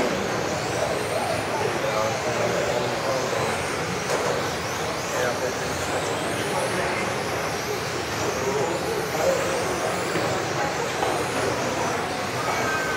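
Radio-controlled street racer cars racing on a hall floor: thin high motor whines rising and falling in pitch as the cars accelerate and brake, over a steady wash of running noise, with voices murmuring in the background.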